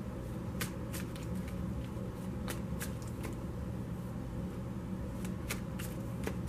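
A deck of tarot cards being shuffled by hand, the cards slapping against each other in scattered, irregular soft clicks.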